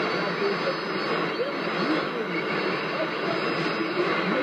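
Shortwave AM broadcast of Rádio Nacional da Amazônia on 6180 kHz, played through a Toshiba RP-2000F receiver: a steady hiss of static with a faint voice under it.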